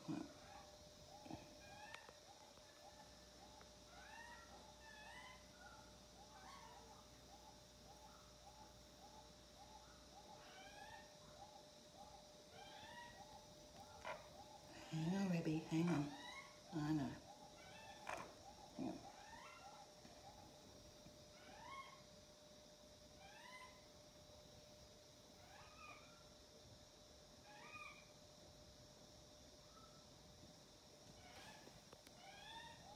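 A hen's faint, repeated high calls, about two a second for the first ten seconds or so, with higher rising notes scattered throughout. A short murmured human voice sound comes about halfway.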